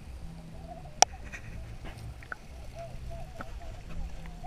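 Sea water heard through a submerged action camera's waterproof housing: a steady, muffled low rumble with short warbling tones scattered through it and a few sharp clicks, the loudest about a second in.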